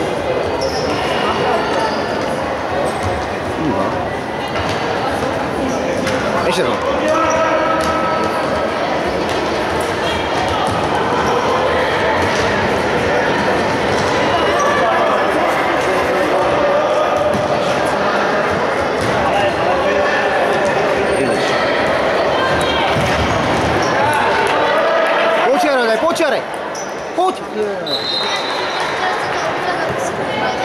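Futsal ball being kicked and bouncing on a hard indoor court, with players and spectators shouting, echoing in a large sports hall. A high, steady whistle sounds near the end.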